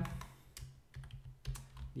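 Typing on a computer keyboard: a handful of separate keystrokes as a short word is typed.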